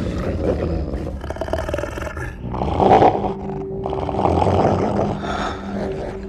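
A cave lion roaring and growling in a series of rough calls, the loudest about three seconds in and another long one a second later.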